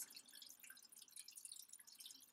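Near silence: faint room tone in a pause of the narration.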